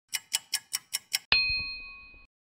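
Clock ticking sound effect, six quick ticks at about five a second, followed about a second in by a single bell ding that rings and fades.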